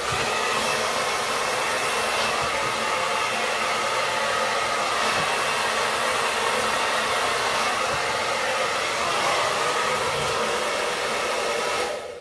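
Handheld hair dryer running steadily on its low-speed, cool setting, blowing on a lifted section of hair. It cuts off at the end.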